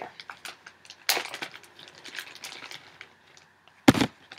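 Clear plastic zip bag rustling and crinkling as it is handled and opened, with scattered light clicks, a louder rustle about a second in, and a single sharp knock just before the end.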